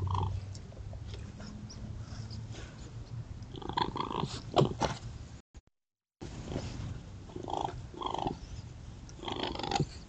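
Young raccoons tussling in grass, giving short calls several times over rustling and a few small knocks. The sound cuts out briefly just past halfway.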